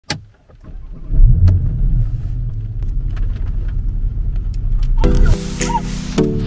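Porsche Panamera 4's twin-turbo V6 started with the push button: a click, then the engine catches about a second in with a brief flare and settles to a steady idle. Background music comes in near the end.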